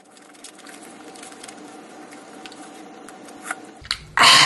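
Wet chewing and squishing mouth sounds of a person chewing fresh ghost peppers with the mouth closed, with many small clicks over a faint steady hum.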